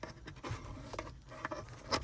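Faint, scattered light clicks and rustles of hands handling a wiring harness against the plastic mirror-mount trim.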